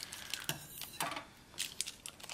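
Scissors cutting into the plastic packaging of a pack of Sailor fountain pen ink cartridges: two short cutting, rustling sounds, then a few light clicks near the end.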